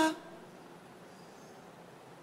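A man's amplified voice trails off right at the start, then only faint, steady room hiss during a pause in the talk.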